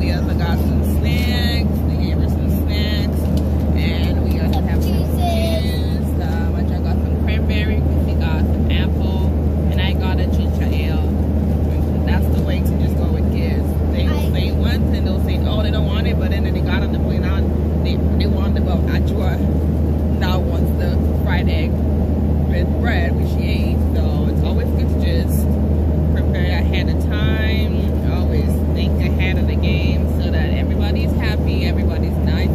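Boeing 737 airliner cabin noise: a loud, steady low drone of the engines and airflow that does not change, heard under a person talking.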